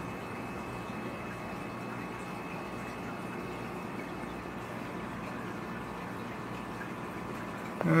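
Steady water noise of a running aquarium filter, with faint steady tones humming underneath.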